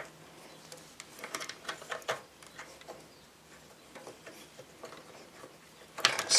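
Faint, scattered small clicks and scrapes of metal parts being handled as a greased pivot pin is worked through a motorcycle foot peg's mounting bracket, with a cluster of clicks one to two seconds in.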